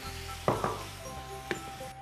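Light background music with bell-like notes, over a faint sizzle of sugar and a spoonful of water heating in a hot frying pan for caramel.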